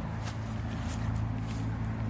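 Footsteps tramping through tall grass and weeds, with plant stems brushing, as a few irregular soft strokes. A steady low hum runs underneath.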